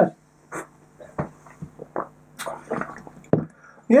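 Sipping and swallowing carbonated cola from drinking glasses: a scatter of small wet mouth and liquid sounds, with a few sharper clicks among them.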